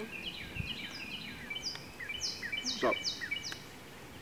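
Songbirds chirping and singing, several overlapping calls, with a run of four quick high notes about half a second apart, each sliding downward in pitch, in the second half.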